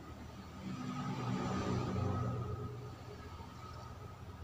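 A motor vehicle passing by: its sound swells from about half a second in, peaks near the middle, and fades over the next second or so, over a faint steady hum.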